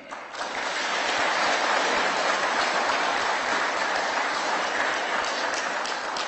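Audience applauding: a dense, steady clapping that swells up within the first half-second and begins to taper near the end.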